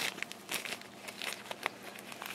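Fingers handling synthetic-blend deer hair dubbing in a dubbing loop at a fly-tying vise, giving faint, irregular crackles and ticks.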